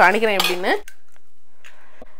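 A woman's voice in a drawn-out, sing-song run of repeated syllables for the first second, then quiet with only a faint, brief rustle.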